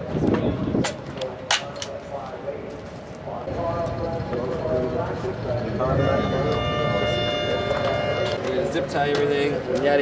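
Two sharp clicks near the start, then a pitched voice with a long held note in the second half.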